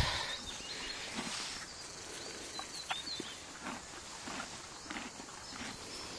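Horse chewing grass close to the microphone: soft, irregular crunching and clicks.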